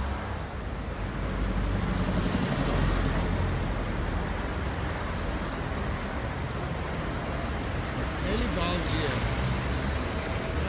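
City street traffic: cars driving past close by, a steady rush of engines and tyres on asphalt, getting louder about a second in.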